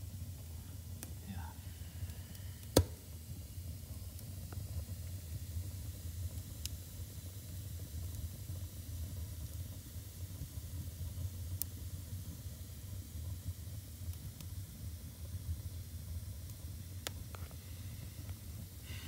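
Wood fire burning, with scattered sharp crackles and pops over a steady low rumble; the loudest pop comes about three seconds in.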